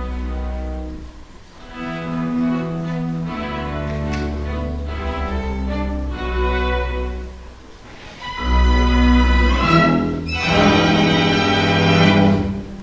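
String orchestra of violins, cellos and double bass playing a classical piece live, with two brief dips between phrases and a louder closing passage from about two-thirds of the way in.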